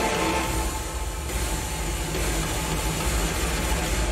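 Sci-fi film soundtrack playing over a hall's speakers: held music tones fade out just after the start, leaving a deep steady rumble and hiss of spaceship sound design.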